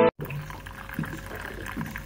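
Coffee pouring from a coffee machine's dispenser spout into a mug, a steady filling sound. The intro music cuts off suddenly right at the start.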